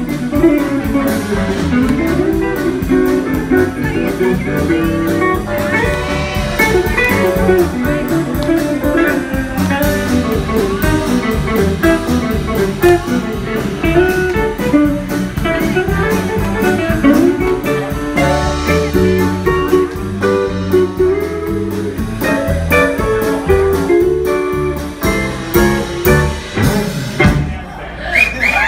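Live country band playing an instrumental passage: electric guitars over electric bass, drums and keyboard.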